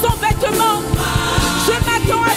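Live gospel worship music: a woman singing the lead into a microphone, backed by a choir and a band with drums keeping a steady beat.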